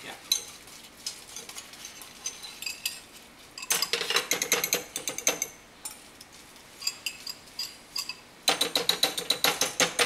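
Metal spoon scraping and tapping coddled egg out of a ceramic bowl into another bowl, in quick runs of rapid scraping clicks. The runs are loudest about four seconds in and again in the last second and a half.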